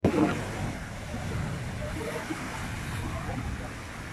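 Sea waves breaking on a rock breakwater, with foaming surf washing between the boulders. It is loudest right at the start as a wave crashes, then settles into a steady wash.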